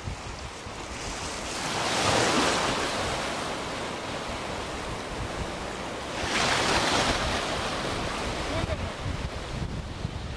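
Ocean surf: two waves break and wash past, the first about two seconds in and the second about six seconds in, with wind buffeting the microphone.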